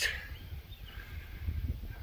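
Breeze buffeting the microphone: a low, uneven rumble.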